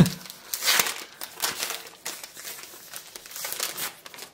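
A trading-card booster pack's wrapper crinkling in the hands and being torn open, in irregular rustling bursts.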